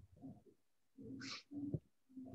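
A pet animal making short, repeated low calls, with a brief hiss about a second in.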